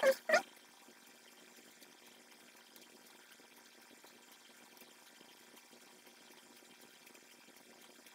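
A short laugh right at the start, then near silence: faint room tone with a few soft ticks.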